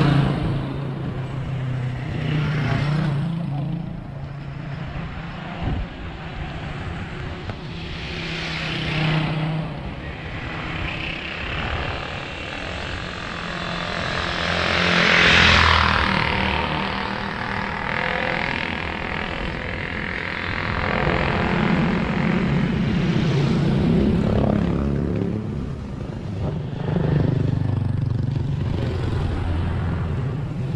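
Motor traffic on a road: small motorcycle and tricycle engines running as they pass, one passing loudly about fifteen seconds in, over steady rumble on the microphone.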